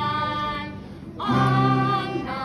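A choir of schoolchildren singing together: a held note dies away just past the middle, and the next phrase comes in strongly near the end.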